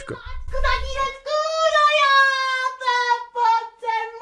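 A high-pitched voice singing, with one long drawn-out note followed by a run of short sung syllables. A low rumble comes at the start, before the singing begins.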